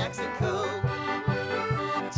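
Live polka band playing: accordion carrying held notes over a steady beat of low pulses, a little over two a second, with banjo in the mix.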